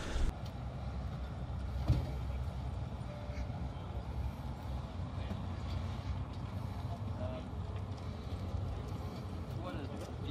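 Outdoor parking-lot background: a steady low rumble with faint voices, and a single thump about two seconds in.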